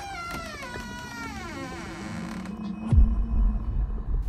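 A door creaking open on its hinges: one long squeal that falls slowly in pitch, followed about three seconds in by a low thump.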